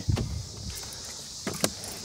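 Chevy Trailblazer door being opened, with a low thump at the start and a sharp latch click about one and a half seconds in. A steady high chirr of insects runs underneath.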